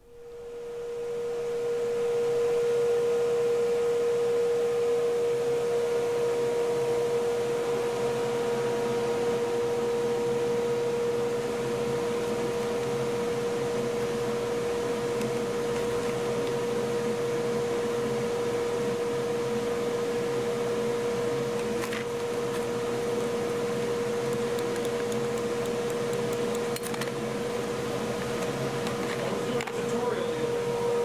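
Steady machine hum in a shop: one held, fairly high tone that swells in over the first two seconds and then stays level. A few light clicks come near the end.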